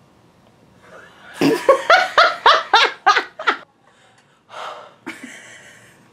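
Hearty laughter: a quick run of about nine loud 'ha' pulses over about two seconds, then a breath and a quieter breathy laugh near the end.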